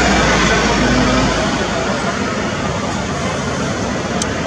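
Steady rush of city street traffic, with a low vehicle rumble that fades away about a second and a half in.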